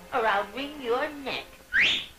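Wordless cartoon-character voice sounds, then a quick rising whistle near the end, the loudest sound here.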